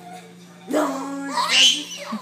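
A baby's high-pitched vocal squealing and laughing: one voiced sound starts about two-thirds of a second in, and a louder, shrill rising squeal follows about a second and a half in.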